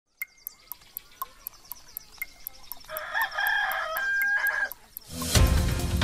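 A clock ticking about four times a second, with a rooster crowing over it about three seconds in, a wake-up effect for the 7 a.m. hour. Theme music starts near the end.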